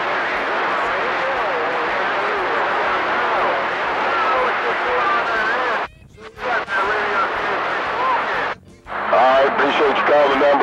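CB radio receiver on channel 28 picking up long-distance skip: a steady hiss of static with faint, garbled voices wavering through it. The signal drops out briefly twice, and a stronger voice comes through near the end.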